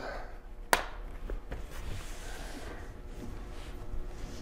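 Laptop bottom-cover clips snapping loose as a plastic spudger pries the cover up: one sharp click about a second in, then a couple of fainter clicks.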